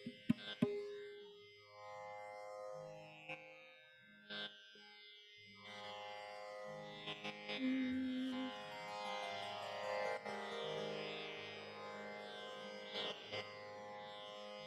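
Soft Indian classical instrumental playing: held notes that move step by step from pitch to pitch, with a few sharp taps near the start.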